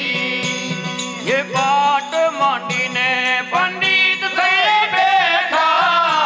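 Live Gujarati devotional bhajan music: a steady low drone under a bending melodic line, with dense jingling percussion struck in quick, repeated strokes throughout.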